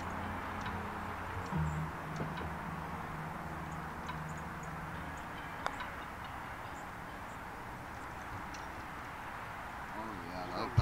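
A steady low motor hum that steps up in pitch about a second and a half in and fades out about halfway through. A little after that comes a single light click of an iron striking a golf ball on a short putt.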